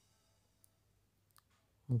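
Near silence with two faint, short clicks about three-quarters of a second apart, then a man's voice starts right at the end.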